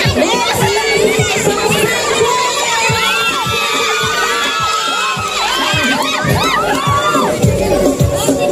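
A large crowd of women cheering and shouting, with many overlapping high-pitched whoops, over background music with a steady bass beat.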